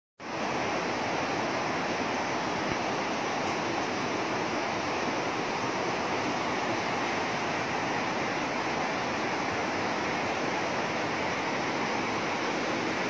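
Steady rushing of a rocky river's current.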